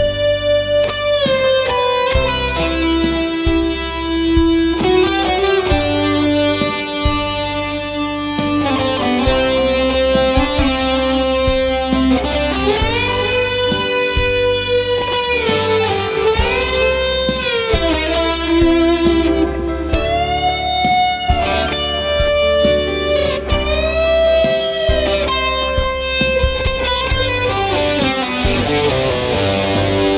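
Electric guitar, a Fender Stratocaster through a Mesa/Boogie Electra Dyne valve amp, playing a slow, melodic lead solo of long sustained notes with wide string bends that rise and fall back. It is played over a backing track with a steady bass line.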